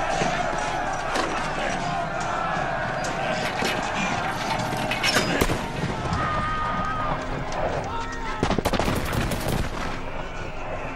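Film soundtrack of a crowd in a street commotion: raised, unintelligible voices over a noisy clamour. A few sharp bangs come about five seconds in, and a rapid run of sharp bangs near the end.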